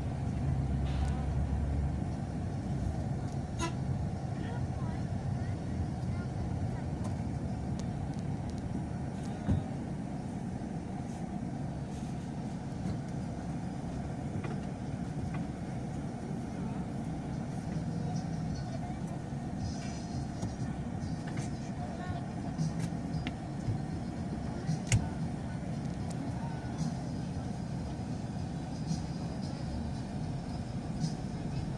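Steady engine and road noise of a moving vehicle, heard from inside the cabin, with a sharp knock about ten seconds in and another about twenty-five seconds in.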